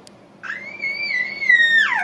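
A baby's high-pitched squeal, starting about half a second in, held level and then sliding down in pitch near the end.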